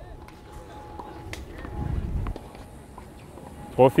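Quiet outdoor background with a low rumble that swells and fades about two seconds in, and a few faint ticks; a voice says one word at the very end.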